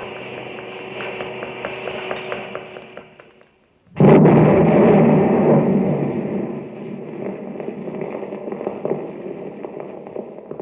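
Radio-drama sound effect: a hissing texture with faint ticks fades out, then about four seconds in a sudden loud explosion rumbles and slowly dies away. It stands for the drums of sodium-potassium reactor coolant blowing up as sprinkler water reaches them.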